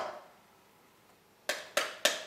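Metal ice cream scoop pounding the skin side of a pomegranate quarter to knock the seeds loose: the ring of one blow fading at the start, then two sharp knocks in quick succession about a second and a half in.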